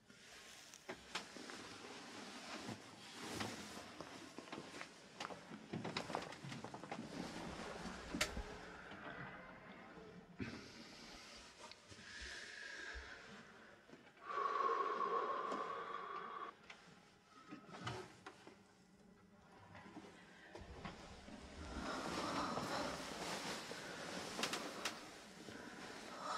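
Quiet rustling of bedding and clothes with scattered soft knocks and clicks, as people shift about on a bed and beside a wooden crib; a louder rustle a little past halfway.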